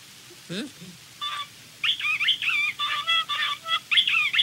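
Cell phone ringing with a novelty chirping ringtone: quick warbling electronic chirps that start about a second in, grow denser at two seconds, and keep repeating.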